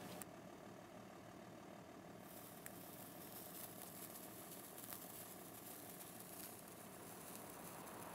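Faint fizzing hiss of a handheld sparkler, with a few small crackles. The hiss starts about two seconds in, as the sparkler catches from a lighter flame.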